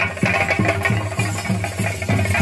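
Chenda drums beaten with sticks in a steady, fast rhythm of about four deep strokes a second, each stroke falling in pitch. A dense bright layer of sound sits above the strokes.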